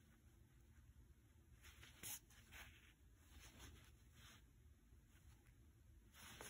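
Near silence, with a few faint soft rasps of embroidery floss being drawn through fabric. The clearest comes about two seconds in, and weaker ones follow over the next couple of seconds.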